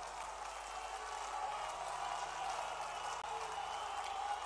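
Large crowd applauding, a steady, fairly faint patter of clapping.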